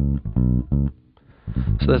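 Bass guitar track played solo and raw, without dynamics processing: a few plucked notes with a strong low end, breaking off about a second in before picking up again.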